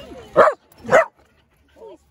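A dog barking twice, two short loud barks about half a second apart.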